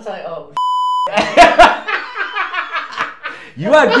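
A short electronic bleep, one steady high tone about half a second long, cuts in about half a second in, as a censor bleep laid over the talk; two sharp knocks follow, then talking and laughter.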